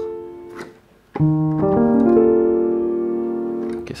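Piano sound from a MIDI controller keyboard. A single held note fades away, then about a second in an E♭7(9,♯11) chord is rolled up note by note from the bass and held ringing. It sounds rather mysterious.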